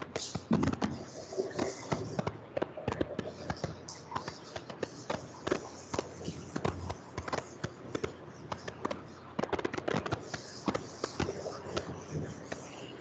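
Chalkboard being wiped with a duster: dry rubbing strokes with many short, irregular knocks and taps as the duster moves across the board.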